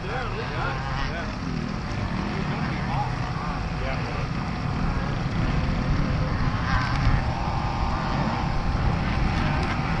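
Dirt bike engines running steadily, a low rumble, with faint voices in the background.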